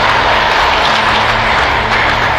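Audience applauding steadily in a hall.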